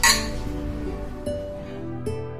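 Glasses clinking once in a toast right at the start, the ring dying away under soft background music.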